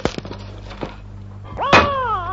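A few short knocks, then near the end a loud, drawn-out cry whose pitch falls, over a steady low hum from the old tape recording.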